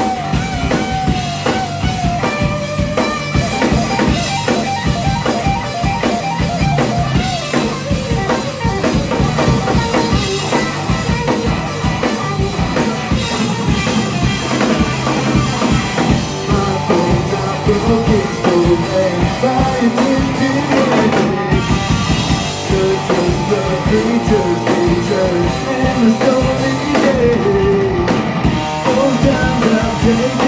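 Live rock band playing a mostly instrumental passage: electric guitar, bass guitar and drum kit at a steady beat, with a singing voice coming in about halfway through.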